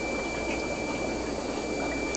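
Steady watery bubbling and trickling from the aquarium's air-driven sponge filters, with a thin, steady high-pitched tone over it.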